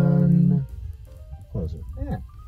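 Two men's voices singing a held note in harmony without accompaniment, which breaks off suddenly about half a second in. A couple of short, gliding vocal sounds follow near the end.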